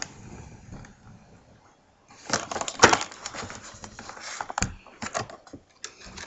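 Handling noise of a camera being picked up and pulled closer: quiet for about two seconds, then a run of clicks and knocks, a sharp one about a second later and a dull thump near the end.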